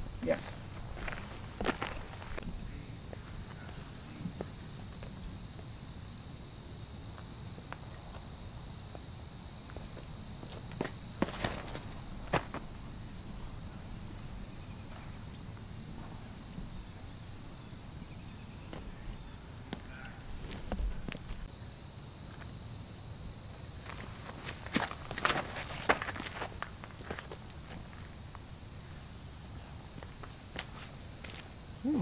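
Outdoor field ambience with a steady high-pitched insect drone, broken by scattered short clicks and knocks, a few grouped near the middle and again near the end.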